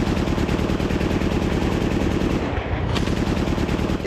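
Rapid automatic gunfire, loud and unbroken, with the shots coming in a fast, even stream. A sharper crack stands out about three seconds in.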